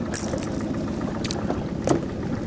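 Several light clicks and rattles of a wobbler's hooks as it is worked free from a lenok's mouth by hand, the sharpest near the end, over a steady low rumble.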